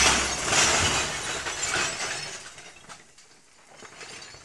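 A sudden crash at the start, then scattered clinks and ticks that fade away over about four seconds.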